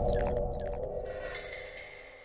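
Intro music sting: a deep booming hit rings on and fades away steadily, with a few short, high falling swishes over it.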